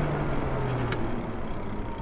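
Lyric Graffiti e-bike rolling and slowing: wind and tyre noise with a low motor hum whose pitch slowly falls as the speed drops. A single click about a second in.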